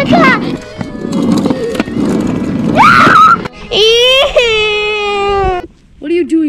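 A child's voice rises into a long wailing cry that falls slowly in pitch for about two seconds and cuts off abruptly. Before it there is a noisy rumble from the small plastic wheels of a wiggle car rolling on concrete.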